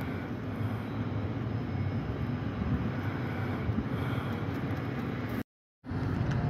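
A steady low rumble with a hiss, cutting off suddenly near the end.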